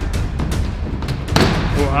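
Background music, with a single loud thump about one and a half seconds in as the heavy plastic penny-board deck of a scooter-skateboard comes down on the wooden skate ramp. A voice starts just before the music cuts off at the end.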